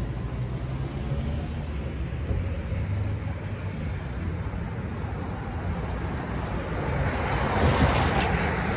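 Street traffic: a steady low rumble of road vehicles that swells near the end as a car passes close by.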